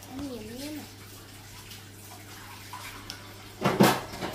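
A short wavering "mmm" hum, then near the end a brief loud scrape as a metal spoon scoops into a paper pint of hard chocolate ice cream.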